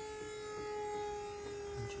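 Steady motor whine from a rope pull-test rig slowly loading a rope tied with an alpine butterfly knot. The pitch sags slightly as the load builds. A faint tick comes near the end.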